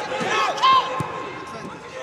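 Footballers shouting short calls to each other on the pitch, the loudest a high call just under a second in, with one sharp thud of a ball being kicked about a second in.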